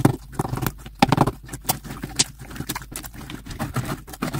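Glossy green slime being squeezed, pushed and pressed flat by hand against a hard tabletop, giving a run of irregular wet clicks and pops, with a couple of louder knocks near the start and about a second in.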